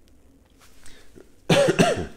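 A man coughing twice in quick succession into his hand, near the end.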